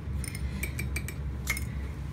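A handful of light clinks against a stainless steel stand-mixer bowl as melted butter is poured from a small container into the flour, over a steady low hum.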